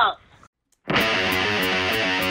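Background music with guitar and a steady beat starts about a second in, after a brief silence.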